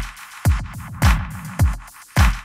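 Electronic drum loop playing back in Ableton Live 12, a punchy kick on every beat about every half-second, its pitch dropping quickly with each hit. Clicky percussion and echoes fill the gaps between kicks, the drums running through the Roar distortion with its delay synced to 16th notes.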